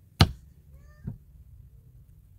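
A single sharp snap as a wire soap cutter's arm comes down through a soap log and hits its wooden base, slicing off a round bar.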